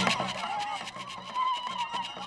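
Festive music from a traditional stick dance: a high, nasal, wavering melody with a held note near the end, over a rapid beat.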